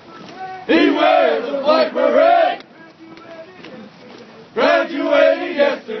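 A platoon of soldiers chanting a marching cadence in unison, repeating the caller's lines. Two loud sung lines, the second starting a little over halfway in.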